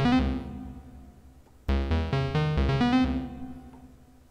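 Synthesizers.com Moog-format modular synthesizer playing a fast sequence of short notes stepped by two daisy-chained Q179 Envelope++ modules in sequencer mode. A run of notes fades away in the first second and a half, then a new run starts just under two seconds in and fades again toward the end.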